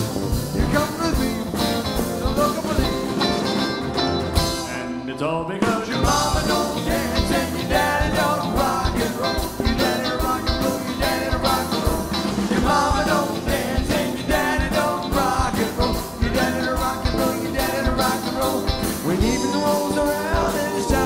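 Live band playing a song with a steady drum beat, electric and acoustic guitars and electric bass, with sung vocals over it.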